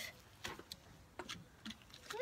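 A few faint, scattered clicks against near quiet.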